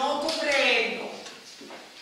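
A woman speaking, her voice trailing off into a short pause a little after the first second.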